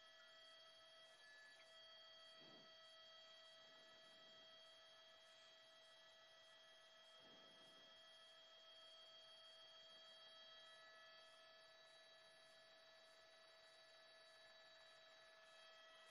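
Near silence, with only a faint steady electronic hum of several held tones.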